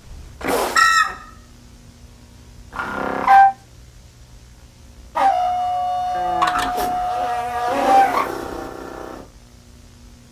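Honkpipe, a homemade novelty blown pipe, giving two short honks and then one long held honk of about four seconds on a steady pitch, which turns rougher near its end.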